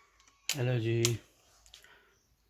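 A short man's vocal sound, under a second long, about half a second in, followed by a few faint clicks near the end.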